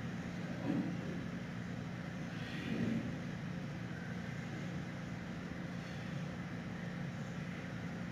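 A steady low mechanical hum, like ventilation or equipment in the enclosure, with two or three brief soft scuffs as the giant panda and her cub wrestle on the straw.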